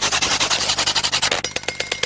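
A fast, rough rattling sound effect: a dense train of sharp clicks that thins out a little in the second half.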